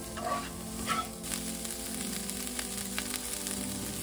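Diced onions sizzling in a nonstick skillet over medium-high heat, with a few light scrapes of a plastic spatula stirring them in the first second or so.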